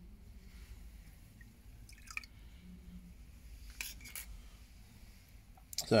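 A few faint drips and small clicks as a just-plated wheel nut is lifted out of a zinc plating bath, the solution dripping off it back into the tank.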